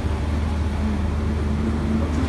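Steady low rumble of street traffic, with a faint steady engine hum over it.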